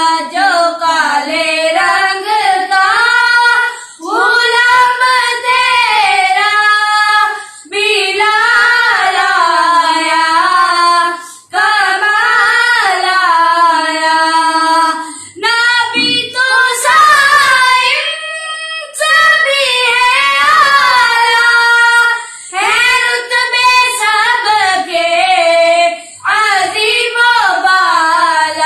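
Two children, a girl and a boy, singing an Urdu naat together without instruments, in long, bending, held phrases with short breaths between them every few seconds.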